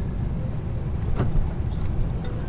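Steady low rumble of a vehicle heard from inside its cabin, with a brief sharp sound a little past halfway.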